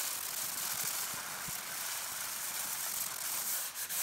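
180-grit sandpaper rubbed by hand in circles over a worn leather car-seat cushion, a steady sanding hiss that stops just before the end. It is smoothing out the rough patch where the leather's coating has come off, before repair.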